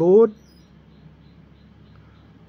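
A man's voice ending a word, then faint steady background hum and hiss with nothing else standing out.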